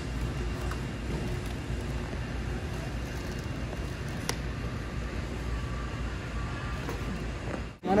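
Steady background noise of a large warehouse store, with one sharp click about four seconds in.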